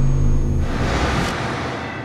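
Tail of a TV show's closing theme music and logo stinger: a held low bass rumble that fades about half a second in, then a rushing whoosh sweep.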